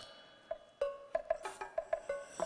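Background music: a tuned percussion instrument playing a sparse run of short struck notes, closer together in the second half.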